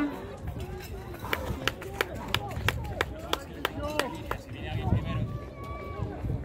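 A runner's footsteps on a dirt path, an even beat of about three strides a second passing close by, over faint voices in the background.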